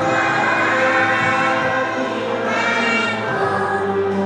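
A choir singing a song with backing music, in long held notes.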